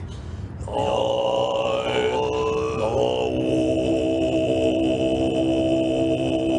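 Throat-singing chant by Tibetan monks: a low, steady voiced drone with a high whistling overtone held above it. It breaks off briefly at the start and comes back about a second in, the overtone gliding before it settles into a steady tone.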